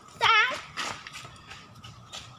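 A child's short, high, warbling call or squeal about a quarter second in, followed by rustling and crunching of dry bamboo leaves underfoot as children run.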